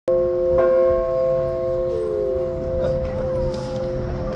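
Large fire department alarm bell struck twice, about half a second apart, then ringing on with a steady, slowly fading tone.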